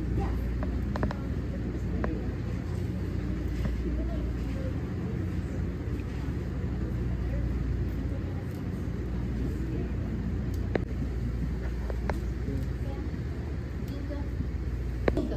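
Classroom room noise: a steady low ventilation hum under an indistinct murmur of students' voices, with a few light knocks.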